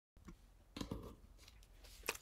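Faint handling noise, a few soft clicks and rustles, loudest about a second in, as a ukulele is lifted into playing position.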